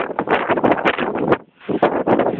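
Wind buffeting the camcorder's microphone in loud, irregular gusts, dropping out briefly about one and a half seconds in.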